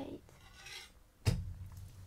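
Rustling as something is handled, then a single sharp knock a little past the middle, followed by a short low rumble.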